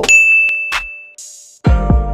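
Notification-bell "ding" sound effect: one bright chime that rings and fades over about a second, followed by a short hiss. Music comes in loudly near the end.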